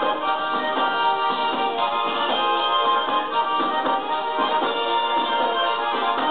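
Tarantella played live on a small diatonic button accordion (organetto), with a steady dance rhythm.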